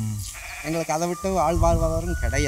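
A man speaking Tamil in an interview.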